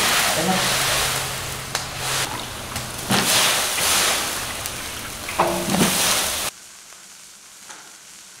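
Fresh green beans sizzling loudly in a very hot wok as they are tossed in and stirred, the hiss swelling and easing. About six and a half seconds in it drops off abruptly to a much quieter background.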